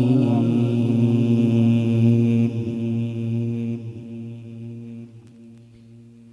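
A man's Qur'an recitation voice holding one long, steady note, which fades away over the second half.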